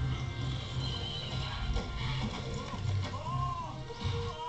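Music playing, with a high wavering call rising and falling near the end.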